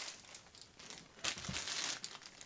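Crinkling of a clear plastic bag being handled, the bag holding a bunch of paint pens. It is strongest in the second half.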